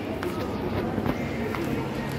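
A few light footsteps and taps on a hard tiled floor, over a steady background hum with faint voices.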